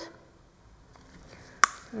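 Faint handling, then a single sharp click about one and a half seconds in, while pigment is being added to a cup of silicone.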